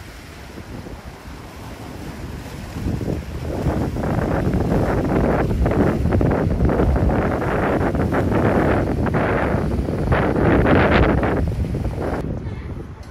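Wind buffeting the microphone in gusts, with waves washing around the pier below. It swells to full strength about three or four seconds in.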